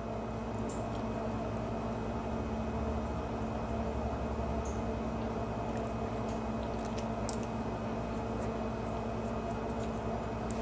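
Steady low hum of room tone, made of a few fixed low tones over a faint hiss, with a couple of faint short ticks partway through.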